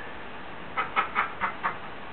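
A short burst of a woman's laughter: about five quick pulses in a row, lasting about a second around the middle.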